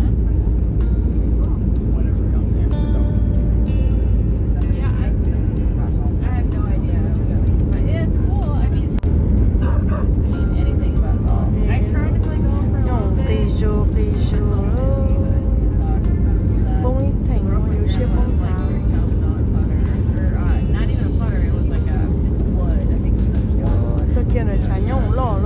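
Steady low rumble of jet airliner cabin noise on approach, with a voice singing over instrumental music on top of it.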